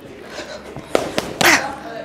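Boxing gloves smacking into focus mitts: three quick sharp slaps about a second in, the last one loudest, with a sharp exhale on the punches.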